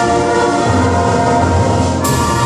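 A middle school symphonic band (concert wind band) holding a loud, sustained chord, with the brass prominent; lower notes swell in about a third of the way through.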